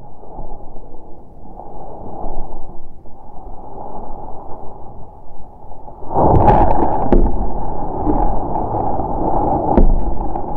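Muffled rustling and handling noise from feeding tongs holding a rat at a cardboard box. About six seconds in, a puff adder strikes the rat: a sudden knock and clatter, then louder scraping and rustling as it grips the prey.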